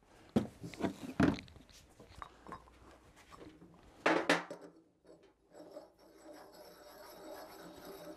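Steel hydraulic-jack accessories knocking and clunking as they are handled and set on a metal bench, with several knocks in the first second or so and the loudest about four seconds in as a head is fitted onto the top of the ram. A faint steady hum follows.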